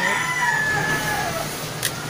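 A rooster crowing: one long held call that slides down in pitch and fades out about a second and a half in. A short sharp click follows near the end.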